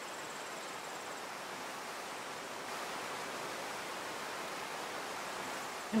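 Steady rushing of a river, an even hiss of flowing water with no separate splashes, growing slightly louder about halfway through.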